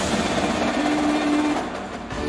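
Indoor percussion ensemble playing a dense, even roll on drums and cymbals with a held tone underneath, growing quieter near the end.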